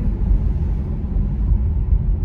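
Steady low rumble of road and wind noise inside a moving car's cabin, which sounds windy on the recording.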